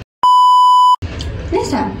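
An electronic colour-bars test tone: a steady, loud 1 kHz beep lasting under a second that stops abruptly, followed by talking.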